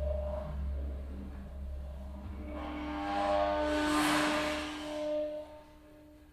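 Tam tam swelling into a shimmering wash with several steady ringing tones, driven by acoustic feedback through a microphone held close to the gong; it peaks about four seconds in and cuts away sharply shortly before the end. Underneath, a deep low drone fades out.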